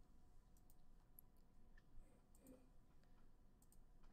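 Near silence: faint room tone with a few soft, scattered clicks of a computer mouse.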